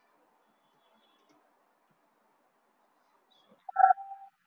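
Near silence with a few faint clicks of computer keys. Near the end comes a short, loud sound with a steady pitch.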